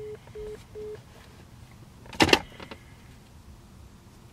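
Three short, even phone beeps about 0.4 s apart: the tone of a call ending. About two seconds later comes a brief, loud burst of noise followed by a few light clicks.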